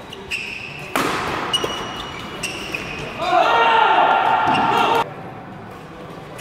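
Badminton doubles play in an echoing sports hall: short squeaks of court shoes on the floor, a sharp shuttlecock hit about a second in, then a loud shout lasting nearly two seconds as the point is won.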